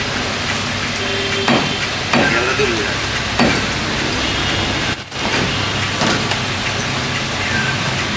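A butcher's blade striking a wooden chopping block a few times, about three sharp chops in the first three and a half seconds, over a steady background hiss.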